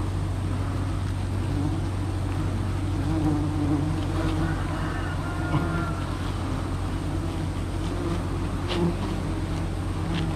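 Wild giant honeybees buzzing around an open comb close to the microphone, a steady drone that wavers in pitch, over a constant low hum.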